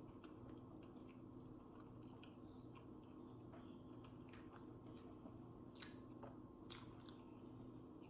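Faint closed-mouth chewing of a chicken soft taco, with scattered small wet mouth clicks, two of them a little louder past the middle, over a low steady room hum.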